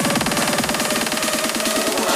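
Electronic trance music: a fast, evenly pulsing synth line over a wash of noise, with little deep bass.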